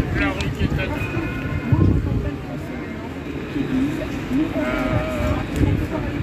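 Indistinct voices of people talking and calling out in the open, in short snatches, over a steady low rumble.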